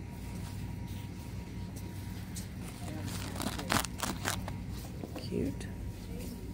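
Steady low hum of a shop, with a cluster of rustles and clicks a little past halfway through as hanging felt Christmas stockings are handled on a display rack; a faint voice is heard too.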